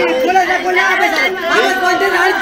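Several voices talking at once, raised and overlapping.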